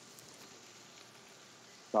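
Faint steady hiss with a single soft click at the very start.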